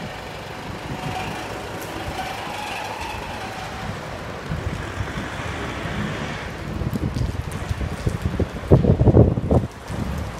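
Steady rumble of a passing truck. From about seven seconds in, wind buffets the microphone in loud, irregular gusts, strongest near the end.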